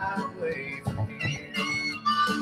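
Instrumental music with guitar, no singing.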